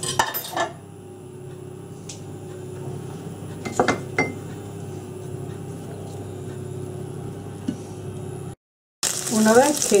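Wooden fork knocking and scraping against a nonstick frying pan as boiled potato pieces are turned in oil: a few clicks at the start and again around four seconds in, over a steady low hum. Near the end, after a brief break, loud sizzling as the oil reaches frying temperature and the potatoes start to fry.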